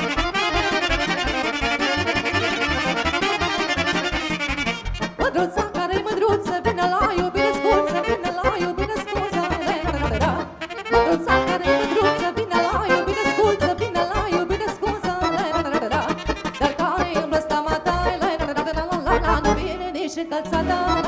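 Romanian folk band playing live: accordion, saxophones, clarinet and keyboard on a dance tune with a steady beat, with a short break about halfway. A woman's singing voice comes in over the band in the second half.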